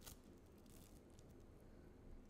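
A few faint crackles of Playfoam's small foam beads being squeezed and handled close to a sensitive microphone, the clearest right at the start, over near-silent room tone.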